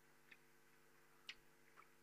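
Near silence, with a few faint ticks of chalk tapping on a blackboard during writing, the clearest a little past the middle.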